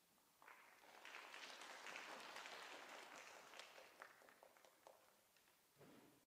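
Faint audience applause that starts about half a second in, swells, then thins out and dies away over the next few seconds.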